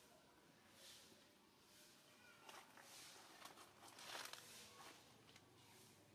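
Near silence: faint outdoor ambience with a few soft rustles, the loudest about four seconds in, and a couple of faint high squeaks.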